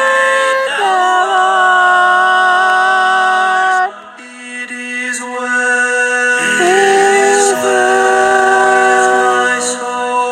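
A cappella voices singing a hymn in close harmony. They hold two long chords: the first breaks off about four seconds in, and after a short, quieter gap the second swells in and is held to near the end.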